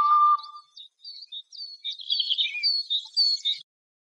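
A held musical note dies away about half a second in, then a series of short, high bird chirps, each a quick falling sweep, stops shortly before the end.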